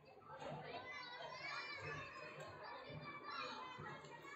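Children's voices in the background, children playing and calling out.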